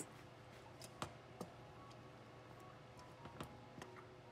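Near silence, with a few faint clicks and taps from a wooden spatula against a non-stick pan as a thick chutney is stirred.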